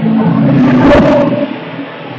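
A loud vocal shout lasting about a second and a half, swelling to a peak about a second in and then dropping away.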